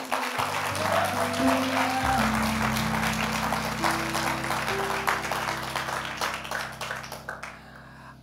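A congregation applauds over sustained keyboard chords. The clapping dies away near the end while the held chords carry on.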